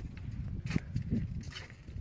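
Wind rumbling on a handheld phone microphone, with a few knocks that fit footsteps on a dock's decking.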